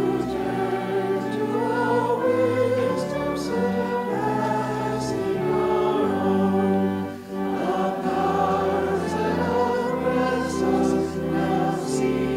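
Church pipe organ playing a slow piece of held chords over low pedal bass notes, the chords changing about once a second, with a brief break between phrases about seven seconds in.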